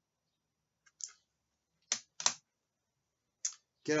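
Plastic CD jewel case clicking and tapping as it is handled and put down: four short, sharp clicks spread across a few seconds, the third the loudest.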